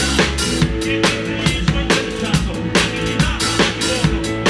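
Live rock band playing, with the drum kit loud in the mix: a steady beat of kick and snare, about three strokes a second, over bass and guitar.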